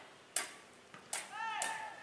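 Three sharp strikes of a football being kicked, about a second in and twice more towards the end, with a short shouted call from a player over the last two.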